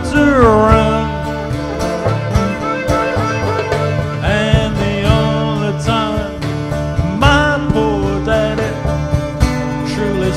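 Live band instrumental break: a fiddle takes the lead with sliding, bending notes over the band's steady bass and drum accompaniment.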